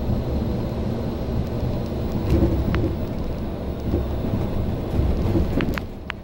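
MAN D2066 inline-six diesel engine of a bus running under load, a deep, loud rumble with a few sharp rattles from the bus body; the rumble eases off near the end.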